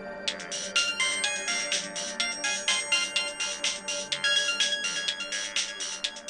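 A melody of quick, bright chiming notes, about five or six a second, like a phone ringtone, starting just after the start.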